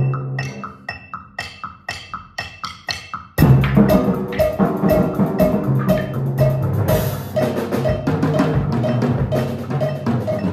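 Drum kit and timpani playing a percussion solo. It opens with sharp, evenly spaced woody clicks, about three a second, over a low held note. About three and a half seconds in, the full kit and timpani come in loudly, with cymbal crashes around seven seconds in and again near the end.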